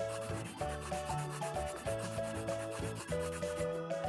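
A scratchy colouring-in sound effect, like a pencil rubbing on paper in quick repeated strokes, over gentle background music with a simple melody and bass line.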